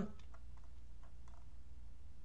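A steady low hum, with a few faint, scattered clicks from a computer mouse as the web page is scrolled.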